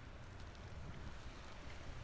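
Faint, steady low rumble of wind on the microphone, with a light hiss of background noise.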